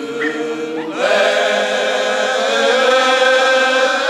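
Cante alentejano: an all-male folk choir singing unaccompanied. One voice leads off the line, and about a second in the whole choir joins, holding long, slow notes with a wavering vibrato.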